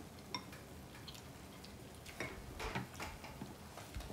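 Faint, scattered clicks and taps of chopsticks against ceramic bowls and the hotpot during a meal, with a few louder taps a little past the middle.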